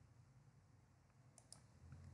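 Near silence: faint room tone, with two faint clicks close together about one and a half seconds in.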